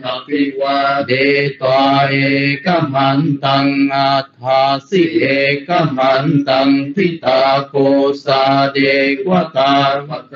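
A man chanting a Pali Buddhist sutta, reciting syllable by syllable on a nearly level low pitch.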